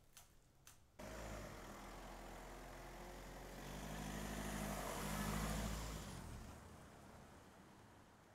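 A car passing on the street: engine and tyre noise swell to a peak about five seconds in, then fade away.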